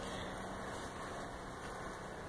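Steady, fairly faint background noise with a low hum underneath and no distinct events.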